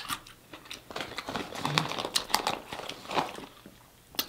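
Close-miked chewing of food, with wet mouth clicks and light crackles scattered throughout.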